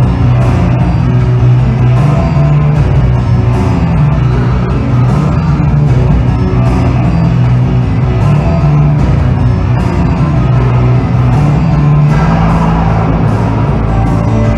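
A live musical-theatre orchestra plays a loud, dense instrumental passage with a heavy bass line and regular percussion hits.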